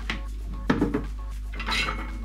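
Light metallic clinks and knocks of small tools being handled on a wooden workbench, with two louder handling sounds, one under a second in and one near the end. The sounds come as a switch is fitted into a helping-hands clamp and a pair of pliers is set down.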